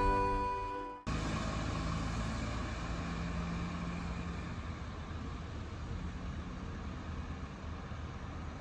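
Background music fades out, and about a second in the sound cuts to street noise: a small car driving away down the road, its engine and tyre hiss slowly fading into the distance.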